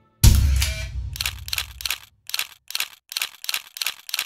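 Intro sound effects: a loud booming hit that dies away over about a second, then a rapid run of sharp clicks, about four a second.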